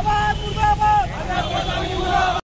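A group of protesters shouting slogans in unison: short, strongly pitched shouted syllables, several held briefly, over a steady low rumble.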